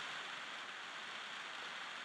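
Faint, steady background hiss with no distinct events: low room tone between words.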